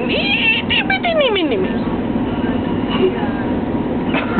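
A person's high-pitched squealing laugh that starts with a few quick pulses and then glides down in pitch, fading out after about a second and a half. A steady low hum sits underneath.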